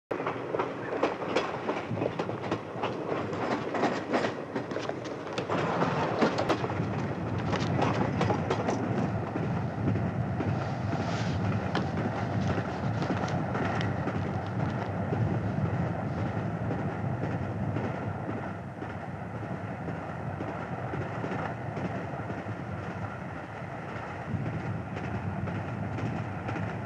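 Passenger train running, heard from inside a carriage: a steady rumble with clattering wheels. The first several seconds are busier, with many sharp clicks and knocks over the rumble.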